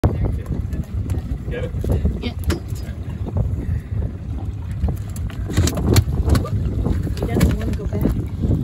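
Wind buffeting a phone microphone on an open boat, an uneven rumble throughout, with a few sharp knocks and brief voices.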